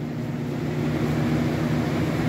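2001 Lasko Premium box fan just switched on and spinning up: a steady rush of air over a low motor hum, slowly growing louder.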